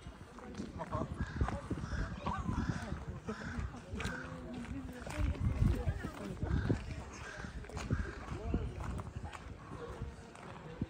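Indistinct talk of passers-by, with footsteps on a wet, cleared path.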